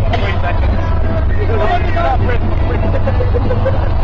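Steady low rumble of road and engine noise inside a moving van's cabin, with people's voices talking and shouting over it.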